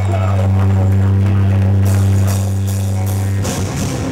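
A heavy band playing live: a loud, held low amplified note drones while cymbal strokes come in about halfway through, then the full band with drums comes in near the end.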